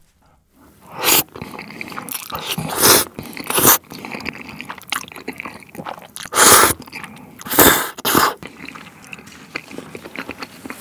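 A person eating oven-baked spaghetti with several loud slurps of the noodles, with quieter chewing between them.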